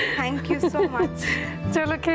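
A woman's voice over steady background music.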